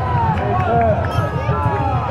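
Grandstand crowd of spectators, many voices talking and calling out at once over one another.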